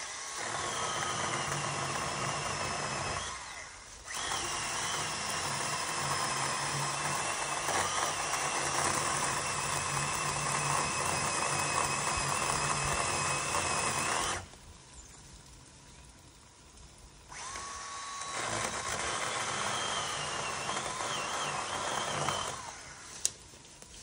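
Craftsman 20V battery-powered six-inch chainsaw cutting into a tree trunk in three runs with short pauses between. The electric motor's whine settles slightly lower as the chain works through the wood. A single sharp click near the end.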